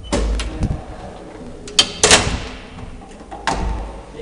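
Clunks and clicks from the doors of an old Graham Brothers elevator being handled: a few knocks in the first second, the loudest pair about two seconds in with a brief ringing tail, and another clunk near the end.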